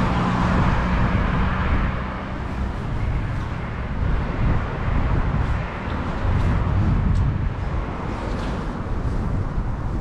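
Road traffic noise on a city street: a steady rumble of vehicles, a little louder in the first couple of seconds.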